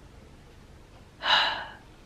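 A woman drawing one quick breath in between phrases of speech, a little over a second in, sounding winded and tired.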